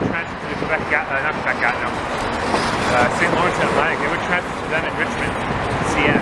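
Indistinct voices talking over the steady noise of a long freight train of tank cars rolling past.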